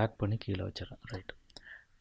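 A few sharp computer mouse clicks over quiet, mumbled talking.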